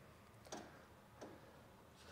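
Near silence with two faint clicks, about half a second and about a second and a quarter in.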